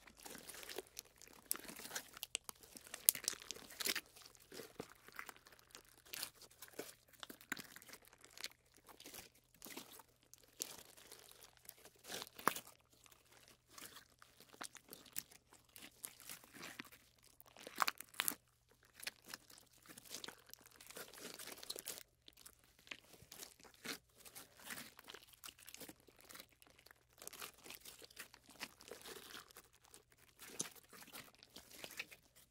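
Clear slime being squished and stretched by hand, making a dense, irregular run of sticky crackles and pops.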